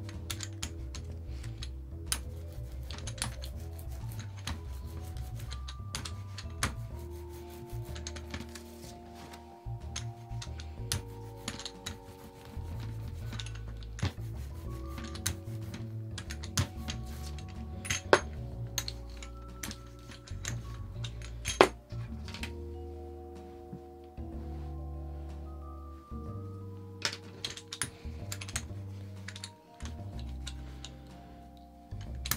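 Background music of held notes over a low bass, with irregular sharp clicks and taps from a paint brayer rolling over a plastic stencil on a gelli plate. Two louder clicks stand out in the second half.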